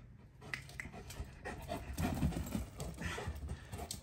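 A Kangal dog panting, louder in the second half.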